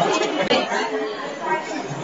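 Background chatter of onlookers: several voices talking at once, with no single voice standing out.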